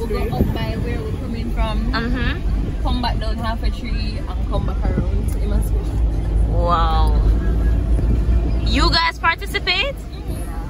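People talking inside a moving car over the steady low rumble of its engine and tyres on the road, heard from within the cabin.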